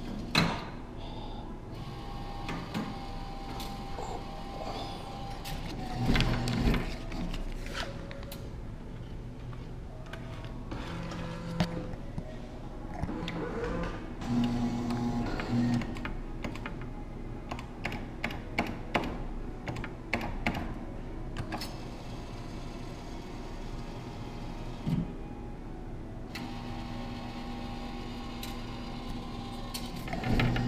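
Claw machine sounds: electronic machine music and tones with scattered clicks and mechanical noises from the claw mechanism, over arcade background noise. Louder stretches come about six seconds in, around the middle, and near the end.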